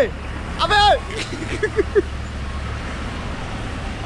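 Car engine idling, a steady low hum, beneath a man's short shouts about half a second in.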